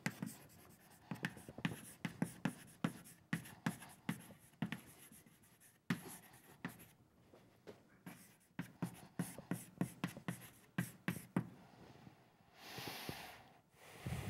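Chalk on a blackboard writing out a line of text: a quick run of sharp taps and short scratches, thinning out in the middle and then speeding up again. Near the end comes a brief soft rush of noise.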